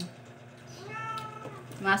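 A cat meowing once: a single call of about a second that rises and then falls in pitch.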